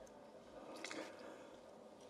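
Near silence: room tone, with a faint wet mouth click close to the microphone a little under a second in.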